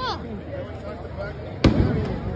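A single firework bang near the end, sharp and loud, over people talking nearby.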